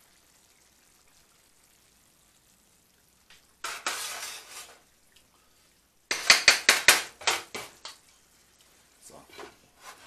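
A wooden spoon stirring curry shrimp in a frying pan. A brief scraping hiss comes about four seconds in, then a quick run of sharp clacks of the spoon against the pan about six seconds in, with a few lighter knocks near the end.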